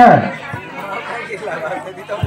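A man's voice over a microphone trails off on a word, then low chatter of many voices, with a steady low hum underneath.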